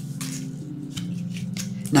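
Tarot cards rustling briefly and sliding as they are laid down on a table, over soft background music of low sustained notes that change pitch twice.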